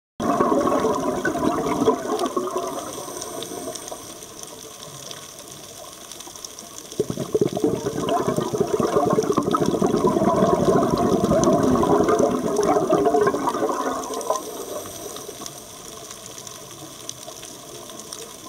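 Scuba diver's exhaled bubbles from the regulator, heard underwater: a burst of bubbling at the start and a longer, louder one in the middle, with quieter hiss between.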